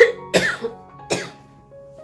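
A woman coughing from a cold, three harsh coughs within the first second or so, then quieter. Soft background music plays underneath.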